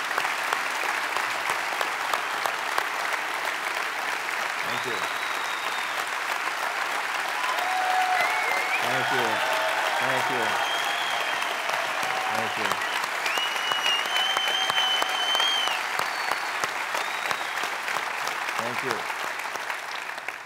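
Standing ovation from a large audience: dense, steady clapping with several long high whistles and a few shouted cheers, thinning out at the very end.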